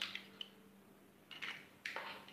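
An egg being pulled open by hand over a glass bowl: a few faint cracks and clicks of the shell, with the contents dropping into the bowl.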